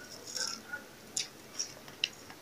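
A spoon stirring a drink in a glass: faint scraping, then a few light clinks of the spoon against the glass.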